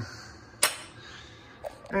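A single sharp knock about half a second in, ringing briefly, then a much fainter click near the end.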